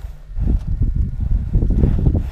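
Wind buffeting the microphone, an irregular low rumble with small scattered knocks.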